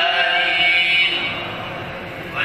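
A voice chanting a long, drawn-out melodic phrase in Islamic devotional recitation, fading toward the end.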